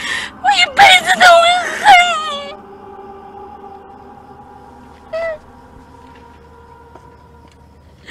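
A woman wailing and sobbing in grief, loud pitch-bending cries in the first two and a half seconds, then one short sobbing cry about five seconds in.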